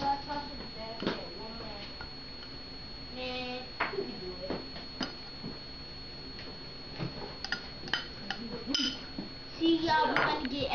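A metal spoon scraping and knocking against a ceramic bowl as diced meat is emptied into a pan, giving a scatter of sharp taps and clicks.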